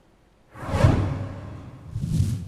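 Whoosh sound effect of a TV news 'breaking news' graphics sting: a falling swish with a deep low rumble about half a second in, fading over about a second. A second whoosh starts near the end.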